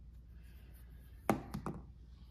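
Three quick, sharp knocks of hard objects being handled, about a second and a quarter in, the first the loudest, over a steady low hum.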